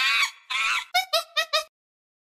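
Short sound-effect logo sting: a couple of noisy sounds with wavering pitch, then four quick chirps, cut off sharply well before the end.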